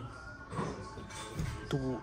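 Light tapping and rustling from a hard-shell motorcycle tank bag being handled and hung back on a wall display, over a quiet shop background with a faint held tone. There is a dull bump about one and a half seconds in, and a man's voice starts near the end.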